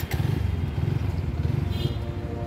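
Motorcycle engine running at low road speed, a steady low rumble heard from the rider's position.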